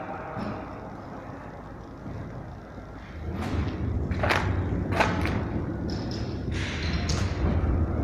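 Handling noise from a handheld phone moving about, a low rumble that grows louder about three seconds in, with a string of short knocks and thuds.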